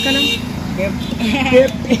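Men's voices talking against road-traffic noise, with a vehicle horn sounding briefly right at the start.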